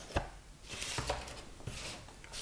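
A few light knocks and a brief sliding rustle as the packaging pieces of a Blu-ray collector's box are handled and set down on a table. The first knock is the loudest.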